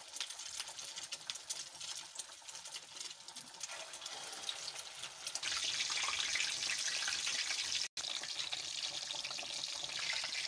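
Hot oil sizzling and crackling around egg-coated beef kebabs shallow-frying in a pan. It grows clearly louder about halfway through and breaks off for an instant near the end.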